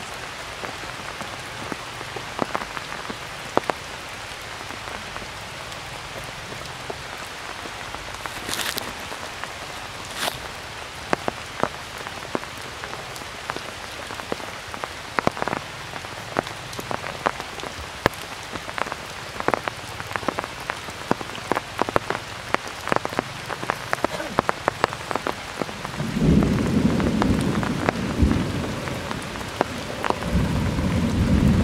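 Steady rain falling on forest foliage, with many sharp ticks of large drops striking close by; the ticks come more often in the second half. A loud low rumble comes in near the end.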